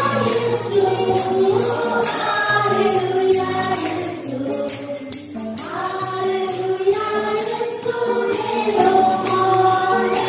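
Several women singing a Nepali Christian hymn in unison, with a tambourine shaken in a steady beat and a hand drum played alongside. The singing pauses briefly halfway through, between phrases.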